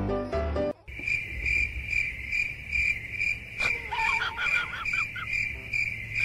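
A cricket chirping steadily, a little over two high chirps a second, after piano music cuts off under a second in. Midway, a dog gives a run of short whining cries for about a second and a half.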